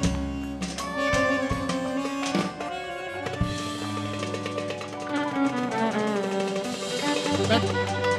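A live band playing an instrumental passage: violin over bass and drums, in long held notes.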